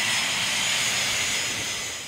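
A small twin-engine business jet taxiing, its rear-mounted turbofan engines giving a steady, loud high whine and hiss with a few thin high tones running through it.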